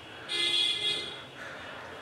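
A short, steady pitched tone, like a horn or buzzer, starting about a third of a second in and lasting under a second, over faint room sound.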